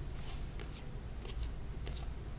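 Chromium baseball cards being flipped through by hand, a few faint clicks and slides as cards are moved to the back of the stack, over a low steady hum.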